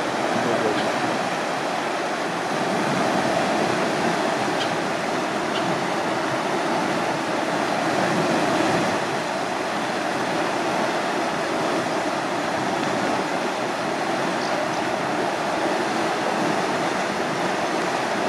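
Water rushing and churning as it pours out through the bottom sluices of closed lock gates into the channel below, a steady, unbroken rush: the lock chamber is being emptied to lower a boat.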